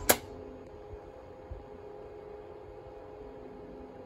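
JR West SG70 simplified ticket gate: a single sharp click just as it finishes handling the inserted ticket, then the machine's steady faint hum with a few held tones while the ticket waits to be taken.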